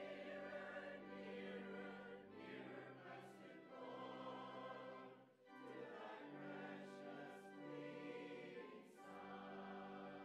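Mixed church choir singing a slow choral piece in long held phrases, with short breaks between phrases about two and a half, five and a half and nine seconds in.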